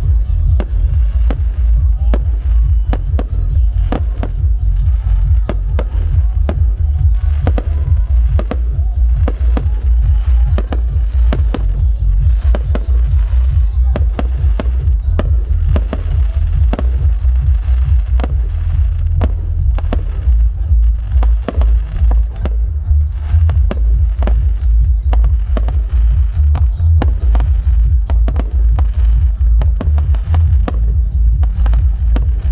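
Aerial firework shells bursting in rapid succession: a dense run of sharp bangs, several a second, over a continuous deep rumble.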